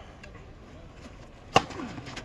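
A two-handled tennis racket striking the ball on a big first serve: one sharp, loud crack about one and a half seconds in.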